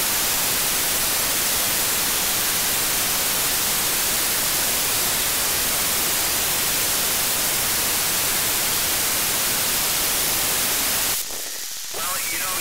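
Loud, even static hiss from a narrow-FM receiver tuned to the ISS downlink on 145.800 MHz, with no usable ISS signal to quiet it. The hiss cuts off suddenly about eleven seconds in, as the downlink carrier comes back.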